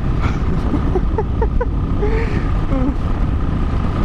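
Royal Enfield motorcycle cruising at highway speed: a steady, loud rush of wind and engine noise with no change in speed.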